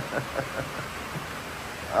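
Steady hiss of rain falling as a heavy downpour eases off.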